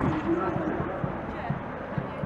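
Indistinct nearby voices over a steady street noise, with irregular short low thumps.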